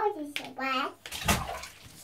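A small child's high voice speaking briefly, then a short splash of bathwater a little over a second in.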